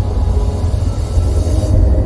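A deep, loud rumble with a high hiss that swells and then cuts off just before the end: cinematic whoosh sound design of an animated logo intro, set within its soundtrack music.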